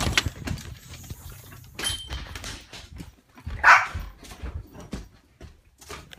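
A dog barks once, a little past halfway, the loudest sound. Around it are the knocks and rustles of a phone being carried and handled on the move.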